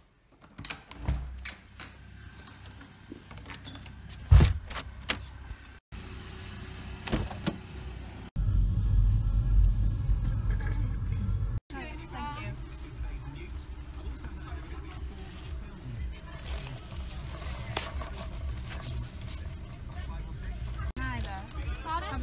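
A door handle clicks and a sharp knock sounds about four seconds in. After that, a MINI's engine runs, heard from inside the cabin, loudest for a few seconds about eight seconds in and then steadier.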